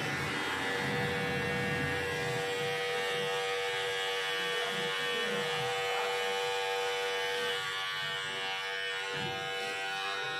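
Cordless electric beard trimmer running steadily as it is drawn over the beard on the neck and jaw, giving an even buzz with a steady whine.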